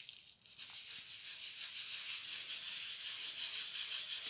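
Oil pastel being worked into paper by hand in small circular strokes: a steady, dry, scratchy rubbing that settles in after about half a second.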